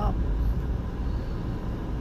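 Steady low rumble of a car's engine and road noise heard from inside the cabin as it drives slowly on a snow-covered road.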